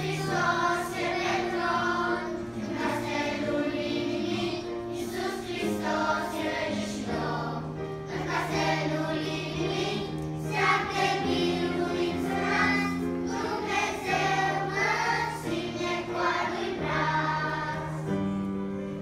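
Children's choir singing in unison, over sustained keyboard chords that change every second or two.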